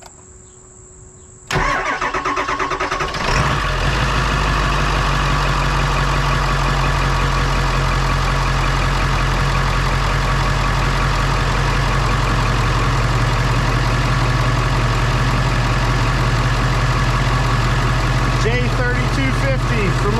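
7.3-litre Power Stroke V8 diesel cranking on its starter for about two seconds, powered only by a lithium jump-starter pack on a dead battery after the glow plugs have cycled, then catching and settling into a steady idle. Crickets chirp faintly before the crank begins.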